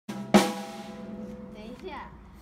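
Drum kit struck twice in quick succession, the second hit the loudest, then drums and cymbal ringing out and fading over more than a second.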